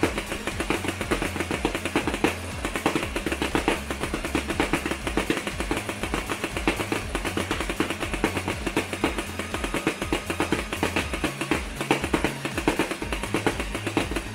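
Motorized Nerf blaster firing foam Rival rounds full-auto in a rapid, unbroken stream, its motor running throughout, with rounds striking the mesh catcher. Background music with a steady bass line plays underneath.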